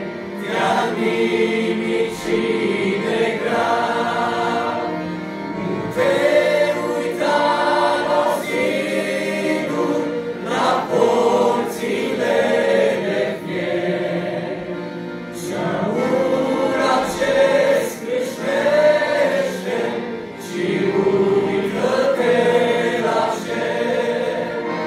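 A church choir singing a hymn, in sung phrases of held notes that rise and fall.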